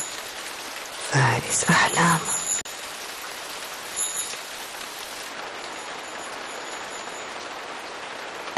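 Steady rain falling, an even hiss throughout.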